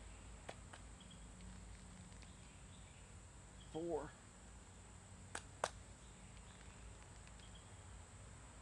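Quiet outdoor background with a faint, steady high insect drone. A short spoken word comes near the middle, and two sharp clicks in quick succession follow about a second and a half later.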